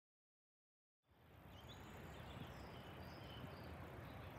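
Dead silence for about a second, then faint outdoor ambience fades in: a soft low rumble with a few faint, thin bird calls.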